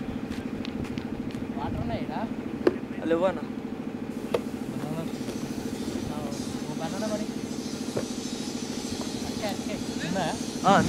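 A steady engine drone with a fast, even pulse runs throughout, under scattered distant voices and three sharp knocks.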